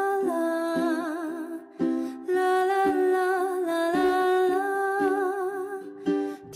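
A solo singer holding long "la la" notes with vibrato over a plucked-string accompaniment, with a short break about two seconds in.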